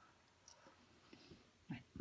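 Near silence: room tone in a small room, with a few faint ticks. Near the end comes a single short, soft spoken "ouais".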